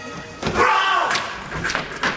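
Actors in a staged sword fight: a shouted cry about half a second in, then thuds of bodies and feet hitting the stage floor in the second half.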